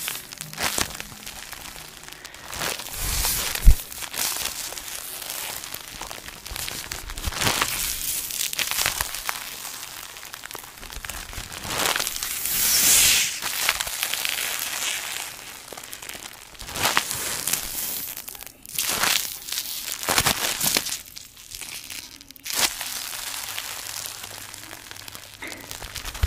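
Clear plastic packaging crinkling as a sealed dry sponge is squeezed and turned in the hands, in irregular rustling, crackling bursts. A sharp thump about four seconds in is the loudest sound.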